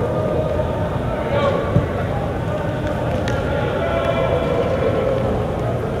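Indistinct overlapping voices of players and coaches talking and calling out across a large, echoing indoor practice field, with one sharp knock about three seconds in.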